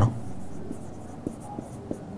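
Marker pen writing on a whiteboard: faint scratching strokes with a few light ticks as a word is written.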